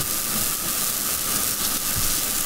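Steady hiss of background noise in the recording, with no speech.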